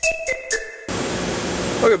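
Background music with held tones and sharp percussive hits cuts off about a second in, giving way to the steady rushing air noise of grow-room ventilation fans, with a man's voice starting near the end.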